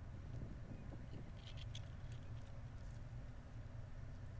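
Faint beach ambience: a steady low rumble with a few soft scuffs and rustles between about one and two seconds in.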